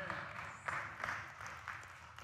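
Congregation applauding, many hands clapping at once, dying away toward the end.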